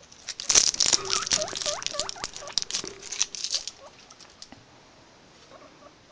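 Guinea pigs in their cage: a quick run of short rising squeaks, about four a second, over a patter of rustling and clicks from the bedding and cage. The sounds stop about three and a half seconds in.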